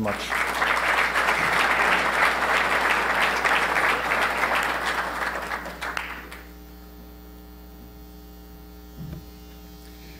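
Audience applauding, a dense clatter of many hands for about six seconds that fades out, leaving a quiet hall with a steady electrical hum.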